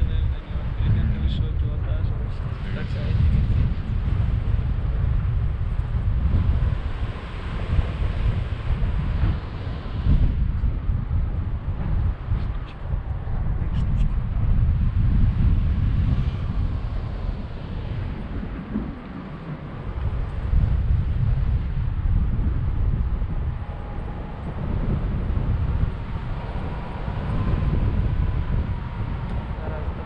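Wind buffeting the action camera's microphone in flight on a tandem paraglider: a gusty low rumble that swells and drops every second or two.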